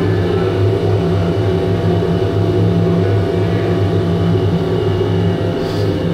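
Oil-fired industrial container washer running, a loud, steady mechanical drone with a low hum.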